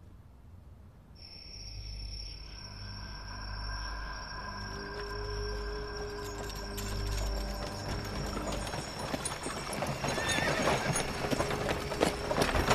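Soundtrack music of long held tones over a pulsing low rumble. In the last few seconds a horse whinnies and hooves clatter, growing louder.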